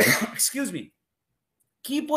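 A man clearing his throat in one short rasp, followed by a pause about a second long before speech resumes near the end.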